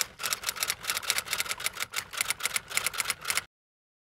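Typewriter sound effect: rapid key clicks, about seven a second, that stop abruptly near the end.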